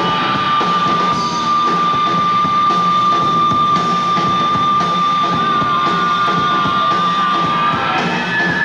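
Rock band playing live, with drum kit and amplified instruments. A single high note is held steady over the music for nearly eight seconds and gives way to other notes just before the end.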